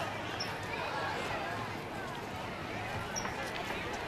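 Outdoor background chatter of a crowd of adults and children on a street, steady and fairly quiet, with no single voice standing out.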